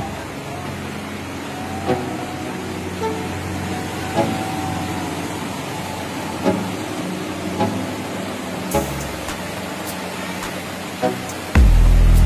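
Background music with a steady beat laid over a continuous rushing noise of floodwater around a tanker truck. A loud deep rumble comes in near the end.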